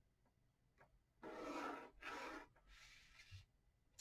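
A pencil drawn along a ruler across smooth bristol board, ruling a panel line, in two strokes about a second in, the first longer than the second.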